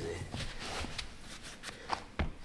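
Scattered soft rustles and light knocks of a running shoe being pulled onto a foot and shifted on a wooden floor.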